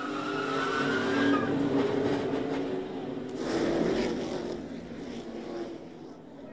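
Broadcast audio of NASCAR Gen-6 stock cars' V8 engines running at speed as cars spin in a multi-car crash, with a high tire squeal over the first second and a half and a louder rush of skidding noise about three and a half seconds in.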